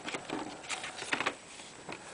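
CD cases and paper booklets being handled by hand: several short rustles and scrapes.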